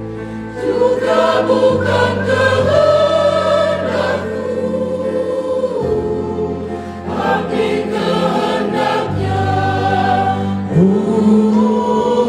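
Women's choir singing a Christian song in Indonesian, with long held low chords from an accompanying instrument underneath.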